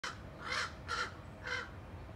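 Crows cawing: four caws in a row, about half a second apart.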